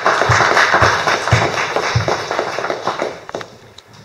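An audience applauding: dense clapping that fades away near the end. A few dull low thumps about half a second apart sound under the clapping in the first two seconds.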